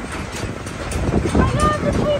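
Steady low rumble of an open-sided passenger wagon in motion. A high-pitched voice calls out in the second half.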